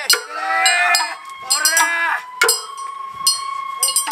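Festival crowd around a portable shrine: men's voices calling out, cut by several sharp, ringing clacks at irregular intervals. A thin steady tone is held from about a second in.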